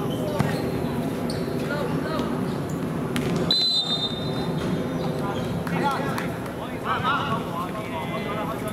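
Footballers shouting to each other across a pitch, with a few thuds of the ball being kicked and a short, high referee's whistle blast about three and a half seconds in.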